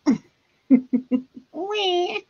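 A woman laughing in quick short bursts, then a drawn-out, wavering high vocal call near the end.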